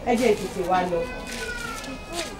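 A person's voice with a wavering pitch that rises and falls, over a faint steady hum.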